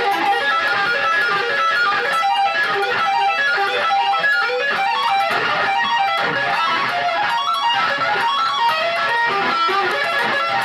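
Electric guitar playing a fast lead line of quick single notes in steady succession.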